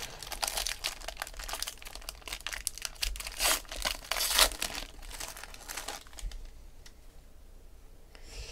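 Silver foil trading-card pack (Panini Impeccable) being torn open and crinkled by hand: a dense run of crackling with a couple of louder tears in the middle, dying down about six seconds in.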